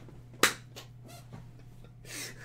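A single sharp knock or slap about half a second in, followed by a few faint ticks, over a steady low electrical hum.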